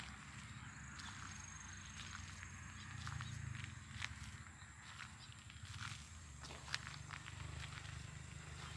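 Field ambience: a thin, steady high-pitched insect drone over a low rumble, with scattered footsteps and clicks on dry ploughed soil. The sharpest clicks come about four and about seven seconds in.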